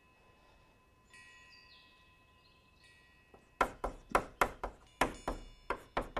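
Near silence for about the first half, then chalk strokes on a blackboard as Chinese characters are written: a quick run of sharp taps and scrapes, about three a second.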